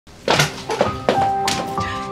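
Several knocks on a wooden front door with a metal door knocker, over background music with sustained notes.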